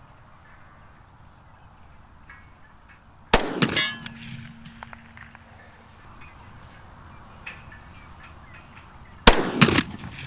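Two 10mm pistol shots about six seconds apart. The first is followed by the clang of a distant steel target being hit and a short ringing tone.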